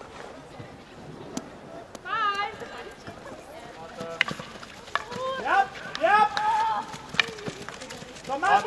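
High-pitched girls' voices calling and shouting outdoors in short bursts, loudest in the second half, with a few sharp clicks in between.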